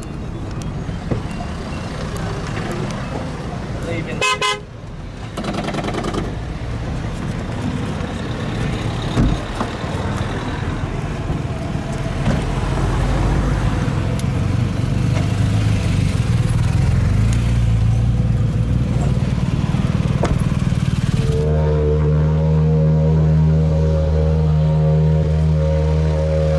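Rally cars' engines running at idle amid crowd chatter, with a short car-horn toot about four seconds in. The engine sound grows louder midway, and from about three-quarters through a steady drone with one clear pitch takes over.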